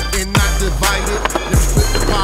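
A skateboard rolling and striking on concrete, mixed with a hip hop beat of deep, falling bass hits and quick hi-hat ticks.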